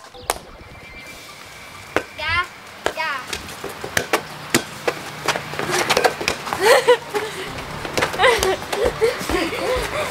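Rubber playground ball being swatted and knocking against the walls of a gaga ball pit, a scattered series of sharp knocks that come more often in the second half, amid children's shouts and squeals.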